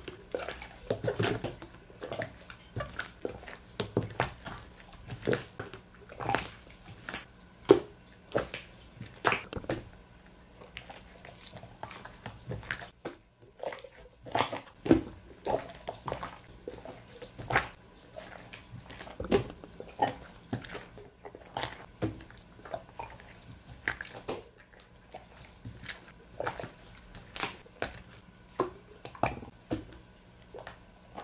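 Thick glossy white slime being kneaded, pressed and folded by gloved hands, giving irregular wet clicks, pops and squelches, a few a second.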